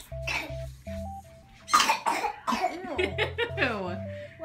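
Music plays with a steady bass line and a simple stepping melody while a person gives a loud cough about two seconds in. A high voice sliding up and down follows near the end.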